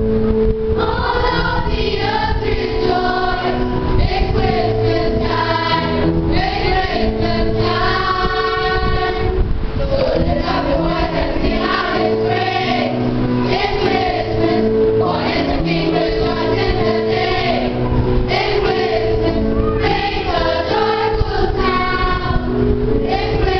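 Children's choir singing a Christmas carol in unison over held accompanying notes.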